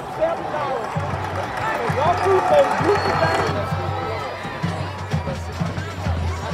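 Football stadium crowd shouting and cheering over music with a low, pulsing beat; the crowd is loudest in the middle.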